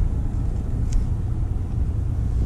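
Low, steady rumble inside the cabin of a 2018 Kia Optima LX as it rolls almost to a stop, its 2.4-litre four-cylinder near idle. A faint tick comes about a second in.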